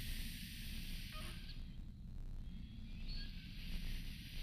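Hissing inhalations drawn through a vape pen: one draw ends about a second and a half in, and another begins near the three-second mark and runs on.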